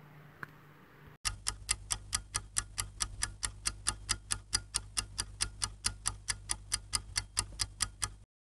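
Clock-ticking sound effect used as an answer timer: quick, even ticks about five a second, starting about a second in, over a low steady hum.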